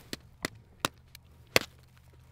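A wooden stick striking the frozen surface of a pond, about five sharp knocks at uneven spacing with the loudest about one and a half seconds in: testing the ice, which is thick and hard.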